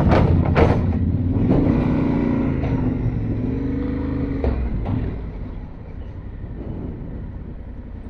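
Yamaha Ténéré 700 parallel-twin engine running at low speed, with tyres rolling over the steel grating and plates of a pontoon bridge ramp and a couple of sharp knocks from the plates. The sound eases off from about five seconds in as the bike leaves the metal deck.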